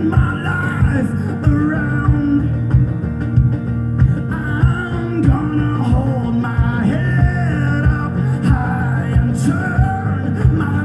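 Live rock band playing: electric guitar over bass and drums, with a steady drum beat.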